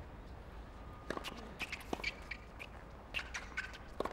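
Quiet ambience of an outdoor tennis court, with a run of short, sharp ticks and chirps from about a second in until near the end.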